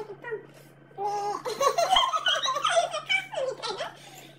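Two women laughing together, breaking into loud laughter about a second in and carrying on almost to the end.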